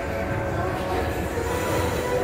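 Escalator running, a steady low mechanical rumble, with background music over it.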